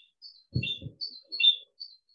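A bird chirping: a string of short, high chirps, the loudest about one and a half seconds in, with a brief low sound of two quick pulses about half a second in.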